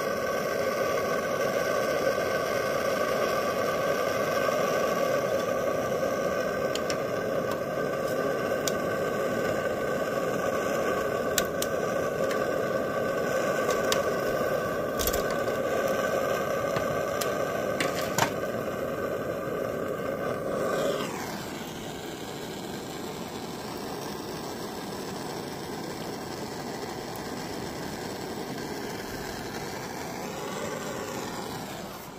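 Hand-held propane torch burning with a steady hiss and a faint whistle while heating an engine's governor shaft, with a few light metallic clicks. About two-thirds of the way through, the sound drops in pitch and quietens to a softer hiss as the flame is turned down or drawn away.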